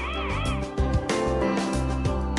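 Warbling warning siren of a Dahua HDCVI active-deterrence security camera, rising and falling about four times a second, over background music. The alarm has been set off by a car entering the camera's perimeter-protection zone, and it cuts off about half a second in, leaving only the music.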